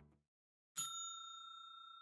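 A single bright bell-like ding struck about three-quarters of a second in, its high tones ringing on and slowly fading: the channel's logo chime at the end of the video. Just before it, the last of the background music dies away into a moment of silence.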